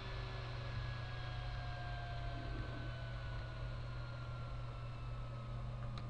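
Steady low hum under faint hiss, with a faint thin tone sliding slowly down in pitch: quiet background noise of the recording.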